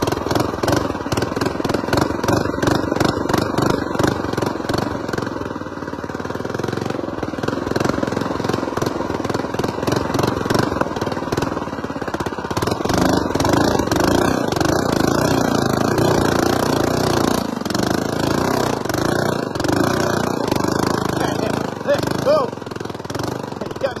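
Small single-cylinder four-stroke Ghost engine on a homemade mini bike, running under throttle while riding up a trail.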